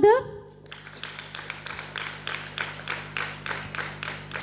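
Audience applauding: a round of many hands clapping that starts just under a second in and keeps going.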